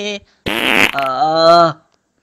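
A short, rasping noisy burst about half a second in, then a buzzing pitched tone lasting under a second that rises slightly and cuts off near the end, in the manner of a comic sound effect.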